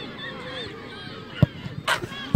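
Penalty kick: a single sharp thud as the football is struck, about one and a half seconds in, then a brief rushing burst as the ball hits the goal netting near the end. Spectators' voices murmur and call underneath.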